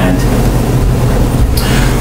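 A steady low hum and rumble of room background noise, with a short spoken "and" at the start.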